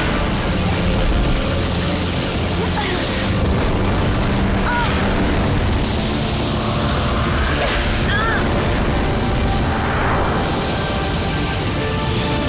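Dramatic action music mixed with booming blast and explosion effects, with a few short whistling zaps near the middle.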